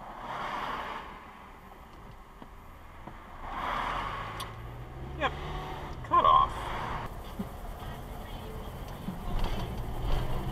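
Car cabin noise recorded by a dashcam: a steady engine and road hum, with the engine pitch rising as the car speeds up from about four seconds in. A few brief muttered words come around the middle.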